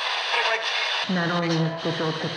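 Radio-like static hiss that cuts in suddenly. About a second in, a distorted, wavering voice-like tone rises out of it.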